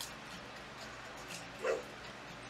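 A pet dog gives one short bark near the end.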